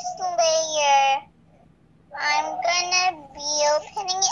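A young child singing in a high voice: two drawn-out phrases, the second starting about two seconds in.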